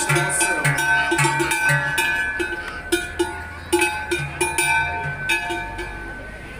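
Large cowbells hung on walking cows' necks, several clanging at once in an uneven swinging rhythm with each step, each strike ringing on.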